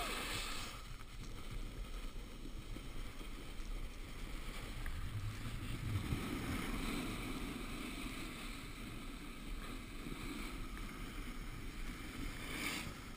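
Snowboard sliding and carving over packed, chopped snow: a steady rough scraping rush, mixed with wind on the microphone, a little louder around six seconds in.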